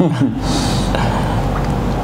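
A man's laugh, its pitch falling at the start, trailing off into a long breathy exhale.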